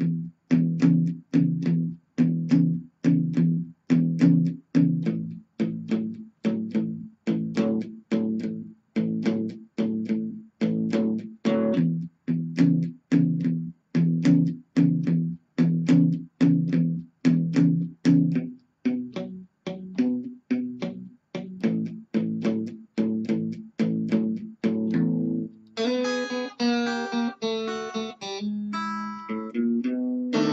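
Squier Stratocaster electric guitar playing a 12-bar blues shuffle in E: short, separated low-string strokes of the E5–E6 rhythm pattern, about two a second. About 26 seconds in it changes to the ending, a walk of ringing higher notes onto a final B7♯9 chord that is left to ring.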